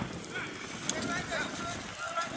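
Indistinct voices of rugby players and onlookers calling out during a scrum, over open-air background noise.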